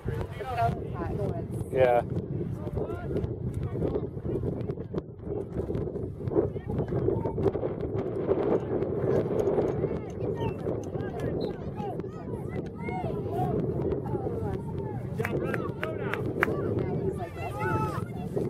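Distant, indistinct voices of soccer players and spectators calling out, over a steady low rumble of wind on the microphone.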